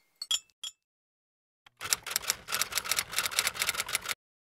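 A few scattered sharp clicks, then from about two seconds in a rapid, even run of sharp clicks, about ten a second, that cuts off abruptly.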